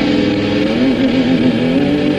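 Heavy metal song intro: a distorted electric guitar holds a sustained chord while one note wavers up and down in pitch in the middle, then settles a little higher near the end.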